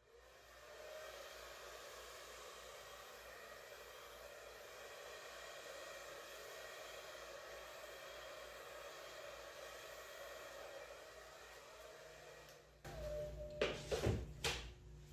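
Handheld hair dryer running steadily, blowing air over wet acrylic paint on a canvas; it comes on about half a second in and stops shortly before the end.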